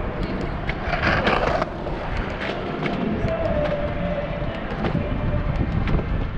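Bicycle rolling over city pavement: steady tyre and road rumble with frequent rattling clicks, a louder burst of noise about a second in, and a steady tone from about three seconds in.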